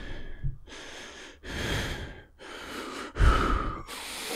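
A man breathing heavily in and out close to a microphone, about four long, deep breaths, the loudest a little after three seconds in, as he works himself up before shouting a line.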